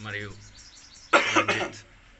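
A man coughs once, loud and short, about a second in, after a brief spoken word.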